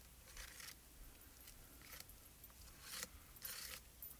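Faint scraping swipes of a spatula spreading texture paste across a stencil on cardstock, several short strokes one after another.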